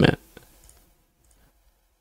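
A few faint computer mouse clicks about half a second in, just after a spoken word trails off, then near silence.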